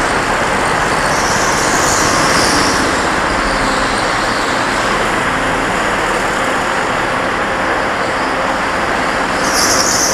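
Go-kart in the pit lane of an indoor track: a loud, steady, even noise with no clear engine note.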